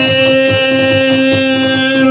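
Live Cretan folk music led by the lyra, with one long note held steady through the whole stretch over a regular plucked accompaniment, just before the next sung mantinada line.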